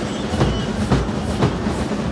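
Mourning-procession percussion: drums and large hand cymbals struck in a steady beat of about two strokes a second, over a continuous low rumble.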